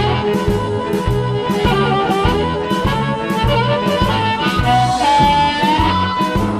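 Amplified blues harmonica played through a JT30 bullet microphone and an analog delay pedal, over a backing track of bass and drums in a swing feel. The lead plays a melody with a long note bent upward near the end.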